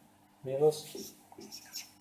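Marker pen writing on a whiteboard in short faint strokes, with a brief spoken syllable about half a second in.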